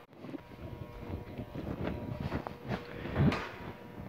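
Quiet workshop background with a faint steady hum and scattered, irregular rustling and handling noises.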